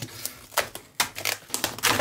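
Product packaging being handled and opened: irregular clicks, taps and rustles.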